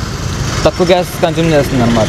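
A person speaking, starting a little over half a second in, over a steady low background rumble.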